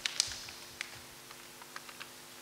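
Paper ballot being taken from a wooden ballot box and unfolded: faint scattered clicks and crackles of paper, the sharpest a fraction of a second in.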